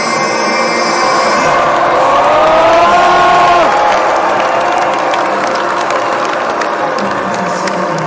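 Concert crowd cheering and clapping, loud and close. For the first few seconds a single wavering pitched tone slides up and down over the noise, then it is mostly crowd noise with scattered claps.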